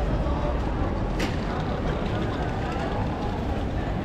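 Busy pedestrian street ambience: the chatter of passers-by over a steady low rumble of the city, with a sharp click about a second in.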